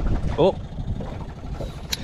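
Small outboard motor running at trolling speed under the boat's steady low rumble, with a short sharp click near the end.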